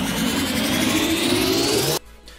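Animated intro sound effect: a loud, noisy rushing riser with a whine that climbs steadily in pitch, cutting off suddenly at the end.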